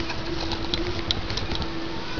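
Handling noise as the camera is moved: scattered small clicks and rustling, with a low steady hum in the first half.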